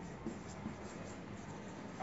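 Faint sound of a marker writing on a whiteboard.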